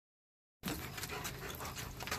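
German Shepherd panting close to the microphone in quick, rapid breaths. The sound starts abruptly about half a second in, after silence.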